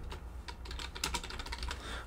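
Typing on a computer keyboard: quiet, irregular key clicks.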